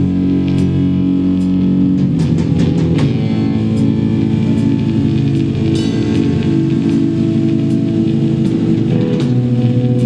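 Live rock band playing electric bass, electric guitar and drum kit: held bass notes and guitar chords over drum and cymbal hits, with a quick run of drum hits about two seconds in.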